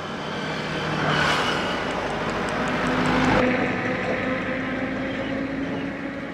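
Petrol pouring from a plastic bottle into a plastic measuring cup: a rushing, splashing pour that swells and then stops abruptly about three and a half seconds in. A low steady hum runs underneath.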